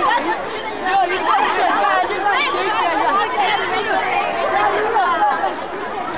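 Several girls' voices at once, chattering, laughing and shrieking in a tangle of high, overlapping calls that go on without a break.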